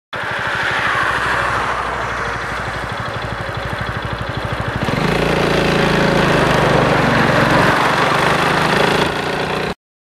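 Piaggio X8 400 scooter's single-cylinder engine running while riding, heard from on board. About halfway through the engine note grows louder and fuller as it pulls harder, then the sound cuts off abruptly just before the end.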